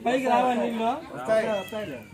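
A man talking, in Telugu, his voice rising and falling in long drawn-out syllables amid a small group of men on a street.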